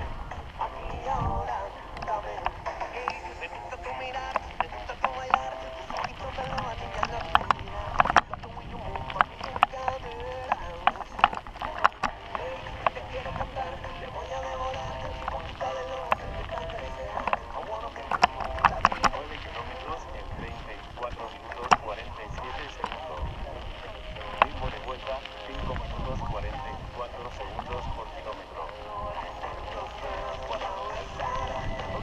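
A mountain bike rattles and knocks over a rough dirt track, with many sharp clicks and jolts. Wind buffets the microphone, and music with a voice plays underneath.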